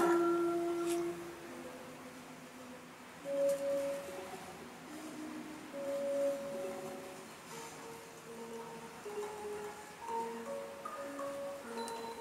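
Thai classical ensemble playing a slow, sparse melody on xylophone-like mallet percussion, single held notes one after another.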